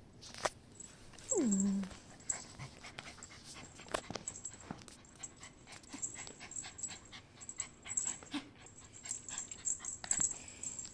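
A dog gives one falling whine about a second and a half in, with scattered light clicks and ticks around it.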